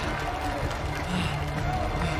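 Indistinct voices of onlookers around the tournament mat, over a low, steady music score.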